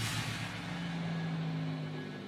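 A low, steady droning hum made of a few held low tones, from the animated episode's audio track.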